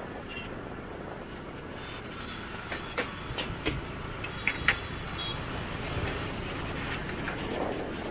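Motorbikes and scooters running along a narrow bridge lane, a steady wash of small-engine and road noise. A few sharp clacks come in a cluster about three to five seconds in.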